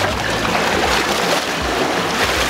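Sea water washing and splashing over pier rocks, a steady hiss of surf.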